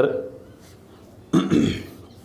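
A man's single short throaty vocal noise, about a second and a half in, lasting about half a second, after his speech trails off at the start.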